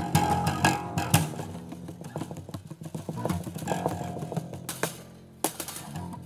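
Solo acoustic bass guitar played with plucked notes and percussive hits, rigged with a snare for extra percussive effect, echoing under a viaduct. The loudest hits come in the first second; after a brief lull, a sharp hit lands near the end.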